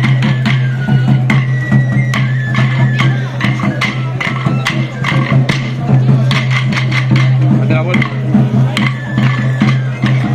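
Traditional festival music for a stick dance: a high pipe melody over a steady low drone, with the dancers' wooden sticks clacking sharply several times a second in rhythm. Crowd voices can be heard underneath.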